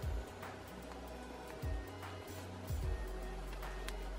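Background instrumental music with a low bass line that steps from note to note and a few short percussive hits.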